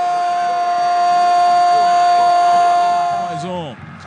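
Football TV commentator's long, drawn-out goal shout, "Goooool!", held on one steady pitch for about three and a half seconds, then falling away near the end.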